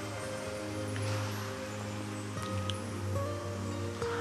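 Soft, slow background music: sustained held chords over a steady low drone, with the chord shifting a few times.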